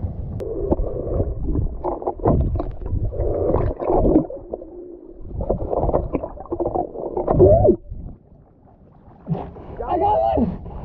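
Muffled underwater sound through a submerged camera: water churning and rumbling against the housing, with a few brief, muffled voice-like sounds. It drops quieter about eight seconds in, then picks up again near the end as the camera comes up near the surface and a hand splashes.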